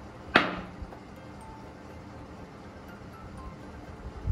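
A small ceramic bowl knocks once, a sharp clink with a short ring, about a third of a second in. Soft background music runs underneath.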